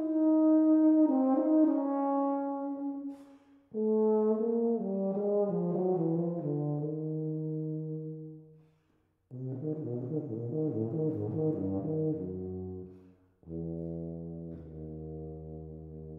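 Unaccompanied tuba playing four phrases with short pauses between them, each sitting lower than the one before. It ends on a long, low held note that fades away.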